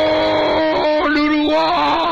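A male radio football commentator's long, sustained goal cry, one drawn-out vowel held at a steady pitch that steps slightly lower about a second and a half in.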